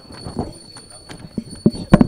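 Irregular knocks and thumps from people moving about close to the microphone, getting louder, with the strongest few near the end, under low murmuring voices.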